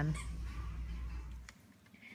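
Faint store background: a steady low hum with light hiss, which cuts off with a click about one and a half seconds in, leaving near silence.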